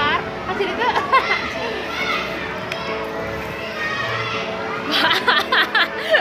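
Children's voices and chatter at play, over steady background music, with a livelier burst of high voices near the end.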